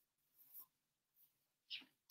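Near silence: room tone, with two faint brief sounds, one about half a second in and a slightly louder one near the end.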